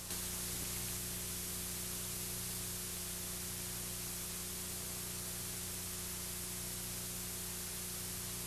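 Steady hiss and a low, even hum from VHS tape playback, with no other sound on the track.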